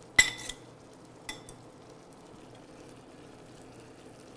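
Metal tongs clinking against a stainless steel pan and a glass bowl while noodles are lifted out. There is a sharp ringing clink just after the start, a few lighter taps, and another ringing clink just over a second in.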